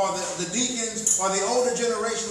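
Speech only: a pastor preaching.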